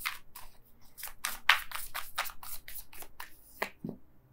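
A tarot deck being shuffled by hand: a quick, uneven run of short papery card flicks.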